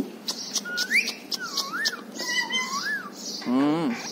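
Caged ring-necked parakeets whistling in rising and wavering tones, mixed with sharp clicks, with a short low, voice-like call about three and a half seconds in.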